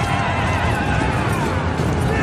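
Cavalry charging: horses galloping and whinnying, with film music mixed in.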